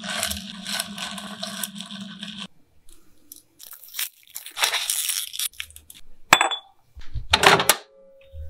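A spoon stirring and scraping in a glass of frothy milkshake, then short bouts of a spoon and glass being handled, with a sharp click and a louder cluster of knocks near the end as a microwave door is worked.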